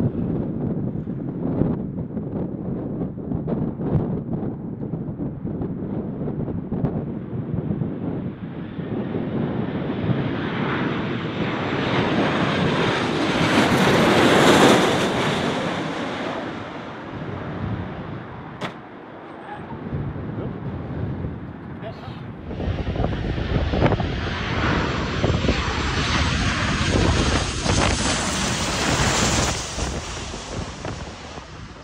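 Boeing 737 jet engines on a low final approach, the noise building to a peak as the plane passes overhead and then falling away with a descending whine. A single sharp bang sounds about 19 seconds in, which the captions give as two cars colliding. After a break, loud jet engine noise with a high whine returns as the plane passes low overhead again.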